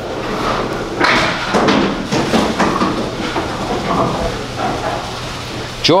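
A candlepin bowling ball thrown down the lane at a spare and knocking into the pins, with a burst of clattering impacts about a second in and a steady noise of the bowling hall under it.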